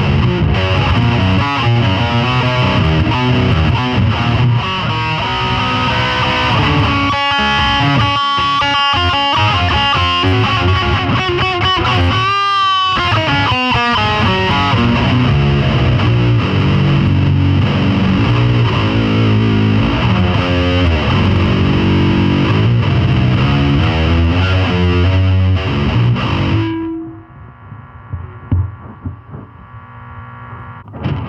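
Heavily distorted electric guitar played loud and fast, with dense riffs and runs and a wide, wobbling pitch bend about halfway through. The playing cuts off near the end, leaving one short held note and faint scraps of sound.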